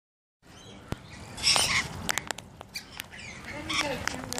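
Rainbow lorikeets calling with short squawks and chatter while bathing and splashing in a shallow pool, loudest about a second and a half in.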